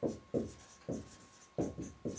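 Marker writing on a whiteboard: about six short, quick strokes in two seconds as symbols are written out.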